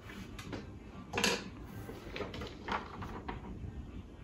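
Small objects being handled on a table, with a few light knocks and the rustle of a sheet of paper being picked up.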